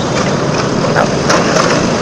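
Steady engine and road noise from riding a motorcycle in slow traffic, with wind on the microphone and a few light knocks about a second in.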